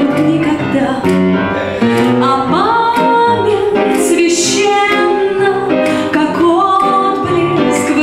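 A woman singing a slow song in C minor into a microphone to grand piano accompaniment, her voice holding long notes and sliding up between them.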